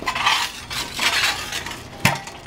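Steel convertible hand truck rattling and clinking as it is moved and positioned, in two irregular bouts of metallic clatter.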